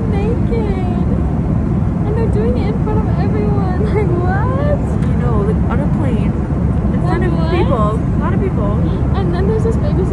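Steady low rumble of a vehicle's cabin in motion, with indistinct voices over it.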